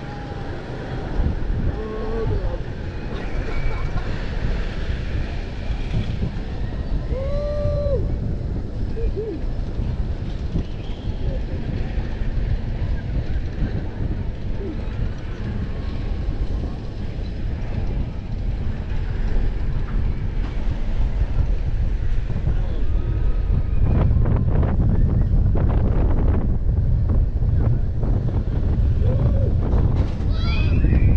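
Wind rushing over the microphone as a freefall tower's gondola climbs, with faint distant voices calling from below. Late on, a run of sharp mechanical clicks and knocks from the ride as the wind grows louder.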